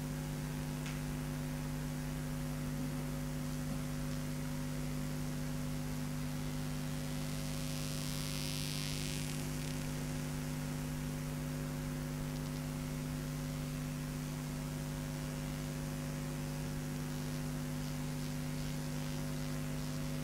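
Steady electrical mains hum picked up through the microphone and sound system, a low buzzing drone of several fixed tones over faint static. About eight seconds in there is a brief soft hiss.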